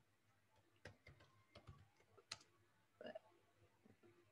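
Faint computer keyboard typing: a handful of short, irregular keystrokes.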